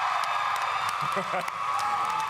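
Large audience cheering and screaming, a sustained high-pitched din of many voices with some clapping, in reaction to a remark from the panel.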